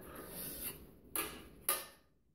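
Rustling handling noise with two sharp metallic clicks a little over a second in, as the brass ballad horn and its crooks are handled.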